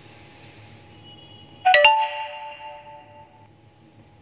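A short bell-like chime: a sharp double strike about two seconds in, then a ringing tone of several pitches that fades and cuts off about a second and a half later.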